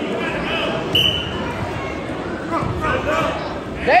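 Spectators and coaches chattering and calling out in a gym during a youth wrestling match, with a short high squeak about a second in.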